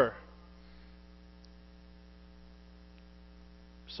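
Low, steady electrical hum, like mains hum in the sound system, heard through a pause in speech.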